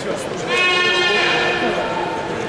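Arena crowd murmur, with a long, loud, high-pitched held call rising over it about half a second in and fading away before the end.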